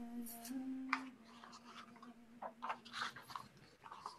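A woman softly humming the last held notes of a wordless melody, with one brief step up in pitch, trailing off about three seconds in. Light rustles and clicks sound through the second half.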